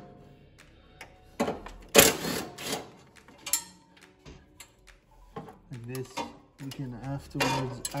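Ryobi cordless impact driver run in a few short bursts while undoing bolts, the longest and loudest about two seconds in.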